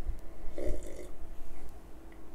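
A man sipping and swallowing a mouthful of beer from a glass, with throaty gulping sounds between his words.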